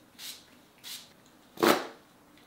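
Three short hissing spritzes from a pump setting-spray bottle misting the face, about two-thirds of a second apart; the last one is the loudest and fullest.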